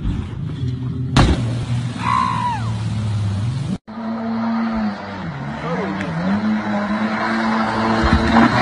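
Boat engine running with rushing water, a sudden loud noise about a second in. After a cut partway through, an aluminium jet boat's engine runs through shallow river water, its pitch dipping and then rising again.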